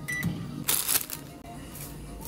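A microwave oven's keypad giving one short, high beep as its start button is pressed, followed just under a second later by a brief rushing noise.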